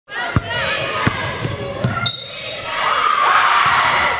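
Gym sound of a basketball game: a basketball bouncing several times on the hardwood floor, with players' and spectators' voices echoing in the hall. The voices grow louder in the second half.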